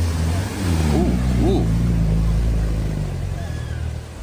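Land Rover Defender's diesel engine running hard under load as it drives fast into deep flood water, with water rushing and splashing against the vehicle.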